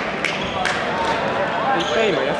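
Indistinct voices chattering in a large gymnasium, with two sharp knocks about a quarter and three quarters of a second in.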